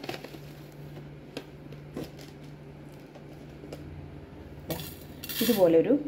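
Scattered light clinks of a metal spoon against a stainless steel bowl as dried rosemary leaves are measured in, with a short dry rustle near the end as the leaves go in.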